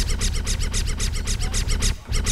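A looped electronic beat: a fast, even run of scratch-like hits, about ten a second, over a steady bass line.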